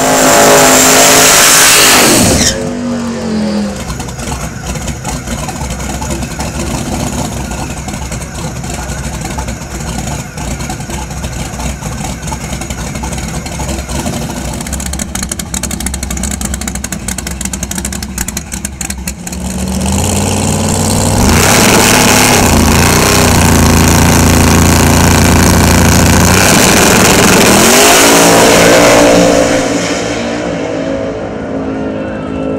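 Drag race car engines. In the first couple of seconds a loud engine sound falls away in pitch. Then engines run steadily at a lower level with scattered clicks, and from about twenty seconds in an engine is revved and held loud and steady for several seconds before its revs fall away near the end.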